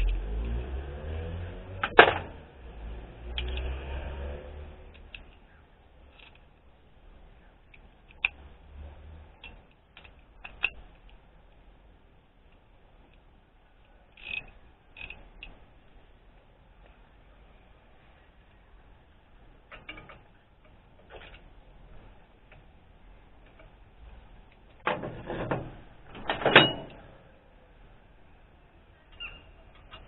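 Sparse clinks and knocks of hand tools on engine bolts and brackets: a sharp clank about two seconds in, scattered light clicks through the middle, and a louder cluster of knocks near the end. A low rumble runs through the first few seconds.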